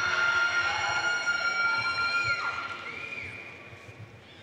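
Someone in the audience cheering with one long, high-pitched call held for about two and a half seconds before it falls away, then a shorter second call.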